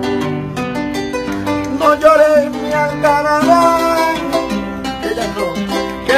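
Live llanera folk music: a band led by plucked strings plays an instrumental passage between sung verses, with melodic lines over steady bass notes.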